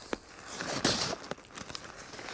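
Backpack fabric rustling and crinkling as the pack is handled and opened, with a few small clicks.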